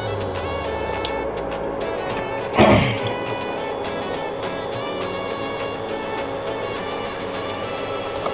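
Background music with steady sustained tones, and one brief noise nearly three seconds in.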